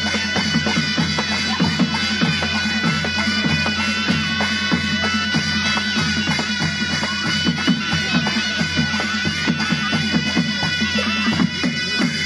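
Nepali panche baja band playing: nasal sahanai reed pipes holding a steady, drone-like melody over fast, dense beating of dholaki hand drums and a larger drum.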